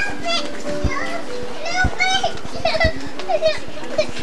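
Children's voices chattering and calling out over one another in short high-pitched bursts, with a low steady tone underneath and dull knocks about once a second.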